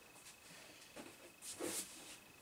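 Faint handling noise of a thin polycarbonate RC car body shell being picked up, with a few soft rustles about a second in and again near the end.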